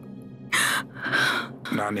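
A woman crying: two short, loud, harsh sobs about half a second and one second in.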